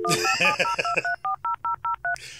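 Dial-up modem dialing out at the start of a dial-up internet connection: the steady dial tone cuts off right at the start and a quick, even run of about ten touch-tone (DTMF) beeps follows, roughly five a second.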